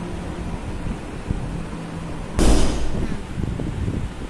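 Handling noise as the paper notes in front of the phone are changed: a sudden loud rustle and knock about two and a half seconds in, dying away into smaller crackles. Before it, a faint steady hum.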